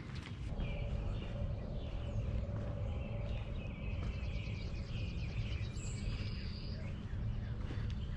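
Outdoor ambience: a steady low rumble with faint high chirping in the background.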